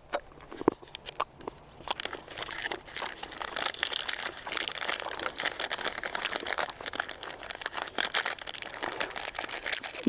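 Wrapper of a combat-ration chocolate bar crinkling as it is opened and handled: a few sharp clicks in the first two seconds, then continuous crackling.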